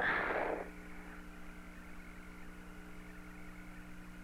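Steady hum and faint hiss of the Apollo air-to-ground radio downlink with no one speaking. A short burst of static in the first half-second marks the end of a transmission.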